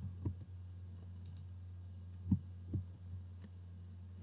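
A few soft clicks, about three, from computer mouse and keyboard use as a selected block of code is deleted, over a steady low electrical hum.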